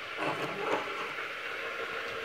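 Water hissing and steaming in a hot Tefal non-stick frying pan, a steady hiss.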